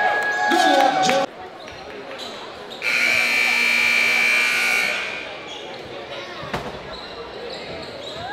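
Basketballs bouncing on a hardwood gym floor, cut off suddenly about a second in. A few seconds later a scoreboard buzzer sounds one steady, high-pitched tone for about two seconds and then fades out.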